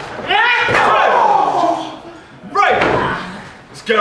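Loud shouting voices in a wrestling match, broken by two heavy slams in the ring, one just under a second in and one about two and a half seconds in.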